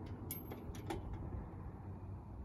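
A few light clicks from a playground swing's chains as it swings, over a steady low rumble.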